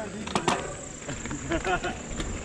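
Low, brief voices, with a few sharp clicks in the first half second and a faint steady high-pitched tone.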